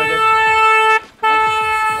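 A vehicle horn honking twice in long, steady, single-pitched blasts. The first cuts off about a second in, and the second follows after a brief gap.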